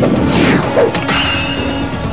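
Cartoon action sound effects over dramatic background music: a crash with a falling whoosh about half a second in, then a high steady ringing tone.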